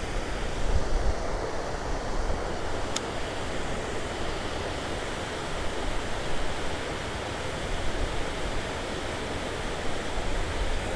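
Steady wash of water pouring over a low-head dam spillway and running through a shallow rocky river, with wind gusting on the microphone.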